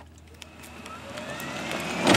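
Golf cart driving toward the microphone, its motor whine rising in pitch as it speeds up while the running noise grows steadily louder.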